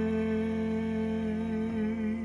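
A tenor voice holding a long final note with a slight vibrato over a sustained piano chord, slowly fading.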